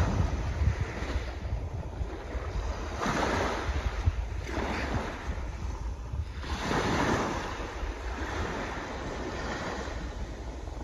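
Small waves washing up on a sandy shore, with three swells of surf that rise and fall a second or two apart. Wind rumbles on the microphone throughout.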